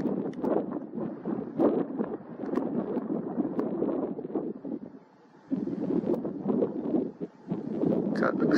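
Wind buffeting the camera's microphone in irregular gusts, with a brief lull about five seconds in.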